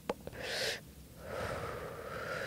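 A woman takes a short drag on a joint, then breathes the smoke out in one long, soft exhale.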